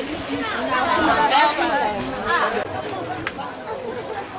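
Several people talking, voices overlapping in chatter, with one short sharp click near the end.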